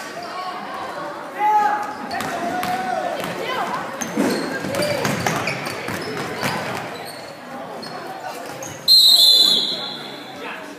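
Spectators shouting and cheering in an echoing gym during a basketball game, with the ball bouncing on the court. Near the end a referee's whistle blows sharply for about half a second, the loudest sound.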